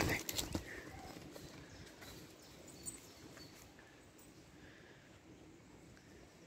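Faint outdoor background on a woodland path, opening with a brief loud sound that falls in pitch, followed by a few light taps.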